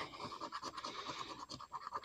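A coin scraping the coating off a paper scratch-off lottery ticket: a quick run of faint, short scratching strokes.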